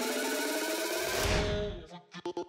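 Electronic dance music building up: a repeating synth pattern with a rising sweep. About a second in, the bass swells and the high end is filtered away, and then the music cuts out at the end.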